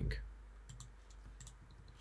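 A few faint, quick clicks from the computer being operated, scattered through the middle of the moment, over a low steady hum.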